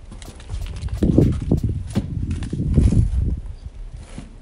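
Footsteps and handling noise from a handheld camera being carried, a run of low knocks and rumbles about a second in that fades near the end, with a few light clicks.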